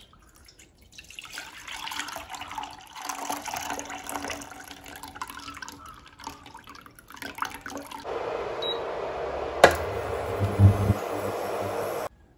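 Milk pouring from a plastic pouch into a stainless-steel saucepan for about seven seconds. After that comes a steady hiss with one sharp knock about two seconds before the end.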